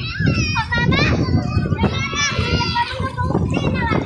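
Young children's high-pitched voices calling out while playing in shallow sea water, over a steady low rush of wind and water.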